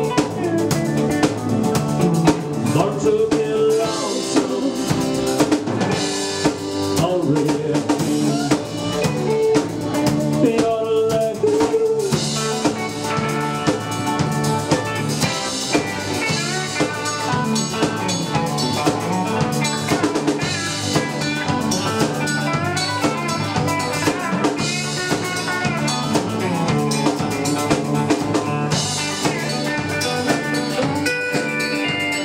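A live country-rock band playing an instrumental break: electric guitars over a drum kit's steady beat, with cymbal crashes recurring every few seconds.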